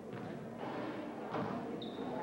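Basketball game sounds in a gym: low crowd chatter and a few dull thuds from players and the ball on the hardwood court, with a brief high squeak near the end.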